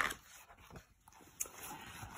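A picture-book page being turned by hand: a short swish of paper at the start, then faint rustling as the page settles.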